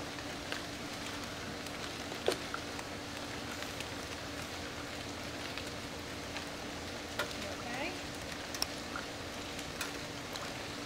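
Steady, even outdoor hiss with a faint low hum under it, broken by a few short faint clicks or small water sounds, the clearest about two seconds in.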